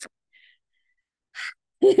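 Mostly silence, then a short, sharp intake of breath about a second and a half in, just before someone starts talking with a laugh near the end.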